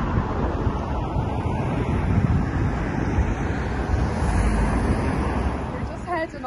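Wind buffeting the microphone: a steady low rumble with no pauses.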